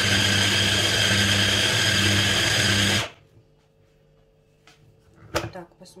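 Hand blender's motor running in its chopper bowl attachment, chopping chunks of raw meat. It runs steadily for about three seconds and stops abruptly. A short click follows near the end as the motor unit is lifted off the bowl.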